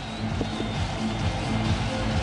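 Music played over a television football broadcast's half-time break.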